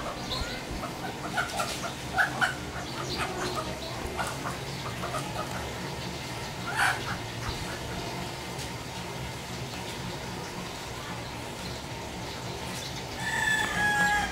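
Domestic chickens calling as a child grabs and carries a hen: a run of short calls in the first half, quieter in the middle, then a longer held call near the end.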